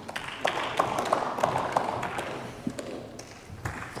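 Scattered applause and sharp taps in a large hall, thinning out as it dies away.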